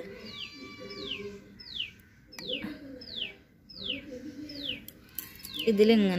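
Birds calling: one repeats a short, high whistle that falls in pitch, about every two-thirds of a second, over lower pitched calls.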